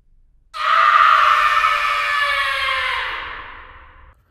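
A loud scream sound effect that starts suddenly about half a second in, then slides slowly down in pitch and fades away over about three seconds.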